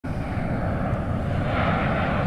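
Formation of Snowbirds CT-114 Tutor jets passing overhead: a steady jet rumble, with a faint whine joining in near the end.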